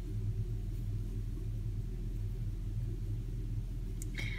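Steady low background hum with nothing else standing out: room tone.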